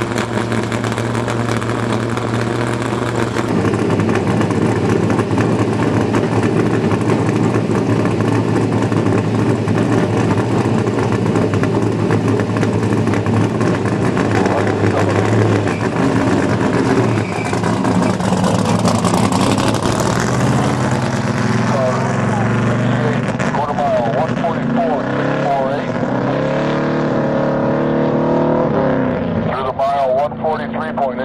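Big-block Ford V8 of a 1964 Fairlane land-speed car, bored out to 557 cubic inches, running loudly. It idles steadily for a few seconds and then runs harder. In the second half its pitch rises again and again as the car pulls away from the start.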